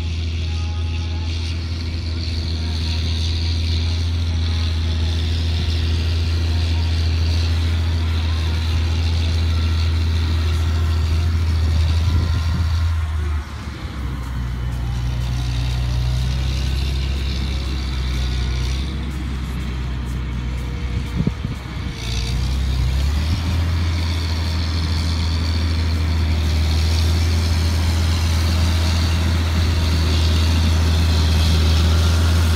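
Challenger MT765C rubber-tracked tractor's six-cylinder diesel engine running steadily while it pulls a land-levelling implement, a deep, steady drone. Its note shifts about thirteen seconds in and returns to the first note some ten seconds later.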